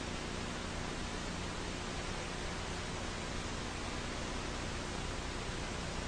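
Steady hiss of a broadcast audio line, even and unchanging, between spoken transmissions.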